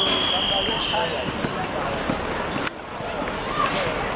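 Referee's whistle blown in one long steady blast that ends about a second in, with players' voices calling on the pitch around it. The sound drops abruptly about two and a half seconds in.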